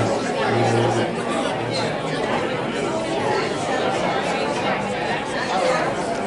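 Several people talking over one another in a large hall: a steady murmur of overlapping conversation.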